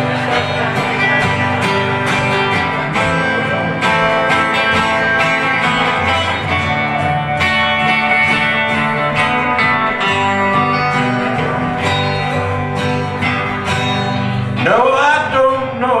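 Two acoustic guitars, a Gibson Southern Jumbo and a Harmony Sovereign Jumbo, play an instrumental break in a country song. A man's singing voice comes back in near the end.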